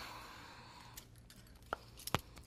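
Very quiet room tone: a soft rustle of movement in the first half-second, then a faint click of resistance-band handle hardware near the end as the handles are taken up.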